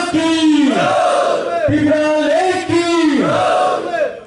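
Crowd of men in a hall chanting slogans in unison: a run of about five long shouted calls, each held on one pitch and falling away at its end.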